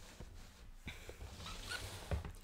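Faint handling sounds: soft knocks and light rustling as hats are set out and moved on a table.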